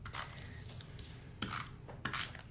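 Cardstock and craft tools being handled on a desk: a few faint scrapes and taps, one near the start and two more about a second and a half in.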